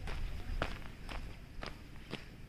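Footsteps on a loose stone and gravel lakeshore, about two steps a second.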